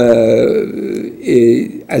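A man speaking Persian in a monologue. A long held vowel fills about the first second, then a short word follows.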